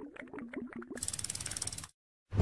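Animated end-card sound effect: a quick run of short pitched clicks, then a fast, even, ratchet-like ticking of about a dozen ticks a second that stops just before the next transition.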